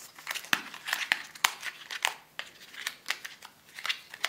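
The wrapper of a Minicco Hazelnut Cream chocolate cornet being peeled off by hand, crinkling in quick, irregular crackles that thin out for a moment past the middle.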